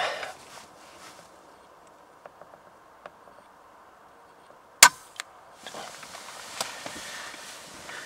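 Air rifle firing a single shot: one sharp crack about five seconds in, followed by a fainter click about a third of a second later.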